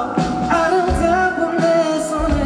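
A man singing a pop ballad live into a microphone, holding long wavering notes over a band with a pulsing bass line.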